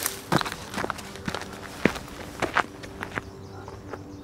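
Footsteps of a person climbing down off a boulder and walking away over stony ground: a string of irregular steps and scuffs.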